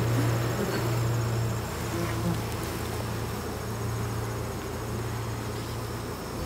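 A honeybee colony buzzing steadily around an open hive with its frames exposed.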